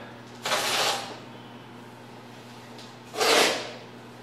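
Masking tape pulled off the roll in two short rasping strips along a truck's rocker panel, one near the start and one about three seconds in.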